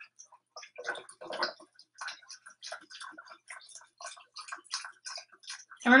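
Beef broth pouring from a carton into a stockpot: a quick, irregular run of small glugs and splashes.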